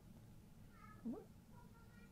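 Near silence: room tone, with one short, faint rising vocal sound about a second in.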